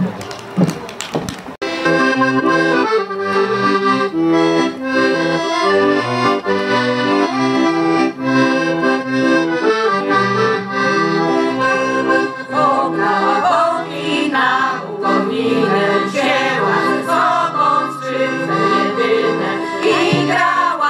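Piano accordion playing a folk tune with a stepping bass line under the melody, starting about a second and a half in after a brief patch of clapping: the instrumental introduction before the women's group begins to sing.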